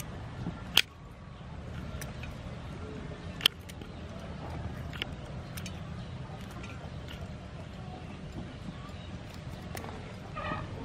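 Sharp clicks and taps on a metal tray as young green peppercorns are cut from their stalks with a small blade, the loudest about a second in and again about three and a half seconds in, over a steady low background hum.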